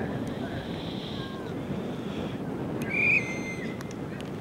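Wind buffeting the microphone as a steady low rumble, with a short high-pitched call about three seconds in.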